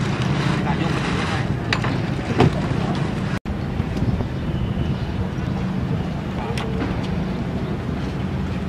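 Steady outdoor background noise: a low rumble with indistinct voices and a few light knocks, cutting out for an instant about three and a half seconds in.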